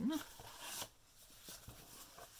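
Stiff scrapbooking paper rustling and sliding as a folded letter envelope is handled and opened out, loudest in the first second, then quieter with a few faint ticks.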